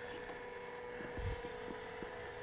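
Small electric motor and gearbox of an FMS FJ Cruiser mini RC crawler whining steadily at a low level as it creeps forward, with a few faint ticks in the middle.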